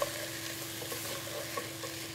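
Mutton chops and onions sizzling in a non-stick pot on high flame, stirred with a spatula: a steady frying hiss with small scrapes and ticks, and a brief click at the very start.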